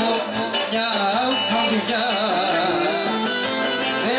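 Live Greek folk music played loud through a PA: a male singer holds a wavering, ornamented melody over an amplified band.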